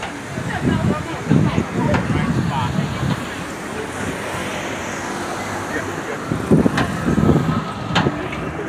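Busy city street ambience: vehicle traffic passing and scattered crowd voices. Low buffeting surges come about a second in and again near the end.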